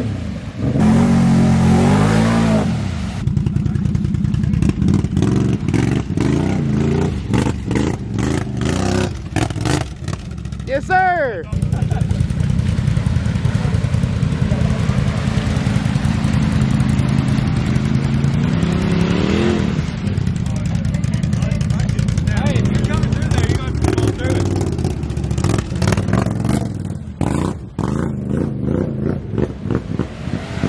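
Off-road vehicle engines revving hard in deep mud with the tires spinning: first a four-wheeler ATV, then a Polaris RZR Turbo side-by-side bogged in a rut. The engine pitch climbs sharply several times as the throttle is opened.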